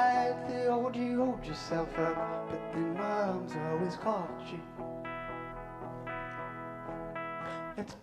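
Live band music led by electric guitar, with no words sung. A melody slides up and down in pitch through the first half, then gives way to steady held chords, with a brief dip just before the end.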